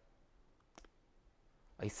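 Quiet room tone with a single short click about a second in; a man's voice starts near the end.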